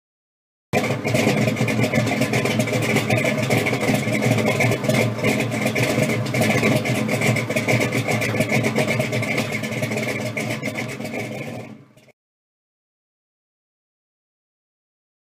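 A car engine running steadily. It starts abruptly about a second in, then fades briefly and cuts off about twelve seconds in.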